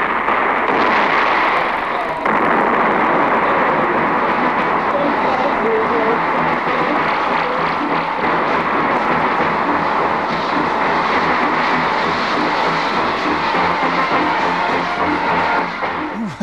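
Battle sound effects from a film soundtrack, with explosions and gunfire mixed into music as a loud, dense, continuous wash. The sound changes briefly about two seconds in.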